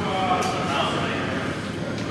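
Indistinct male speech over the steady hum of a large gym room.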